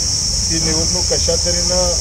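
A man speaking, starting about half a second in, over a steady high-pitched drone that does not change for the whole stretch.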